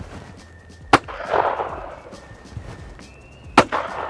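Two shotgun shots about two and a half seconds apart, the second the louder: a break-action shotgun fired at a report pair of clay targets, first at the looper and then at the crosser.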